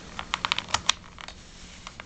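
A quick, irregular run of about ten light clicks, bunched in the first second with a couple more after, over a faint steady hum.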